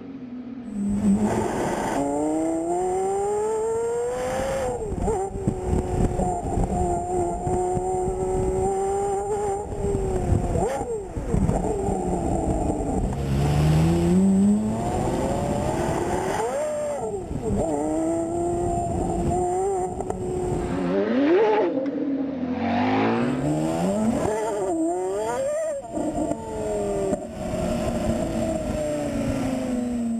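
Porsche Carrera GT's V10 engine being driven hard. Its pitch climbs under acceleration, then drops sharply at each gear change or lift, over and over.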